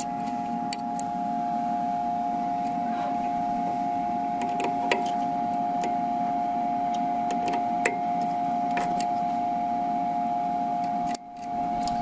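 A steady machine hum at one pitch, with a few faint metallic clicks as a steel cutting blade is handled and seated in the edger's blade holder. The hum cuts out abruptly near the end and comes back.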